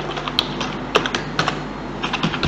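Computer keyboard being typed on: a run of separate, irregularly spaced keystrokes as a password is entered.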